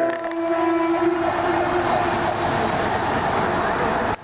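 A horn sounds one steady note for about a second and a half, over a loud, steady rushing noise.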